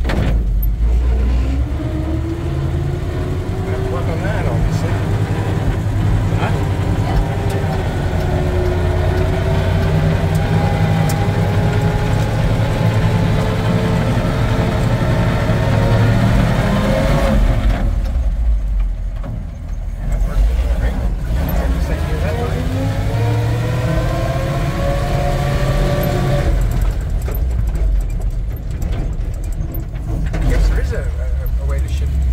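The 1948 Ford car hauler's engine heard from inside the cab, pulling up through the revs with its pitch climbing slowly for about fifteen seconds, dropping away for a couple of seconds, then climbing again before easing off near the end.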